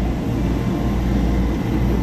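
Steady noise of a jet airliner running on the apron, a constant roar heaviest in the deep low end.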